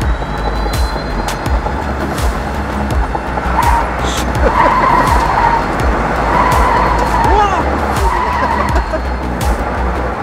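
Tyres of a Zoox electric robotic test vehicle squealing as it swerves through a cone course on concrete, over a steady low road and wind rumble. The squeal comes in wavering stretches from about a third of the way in until near the end.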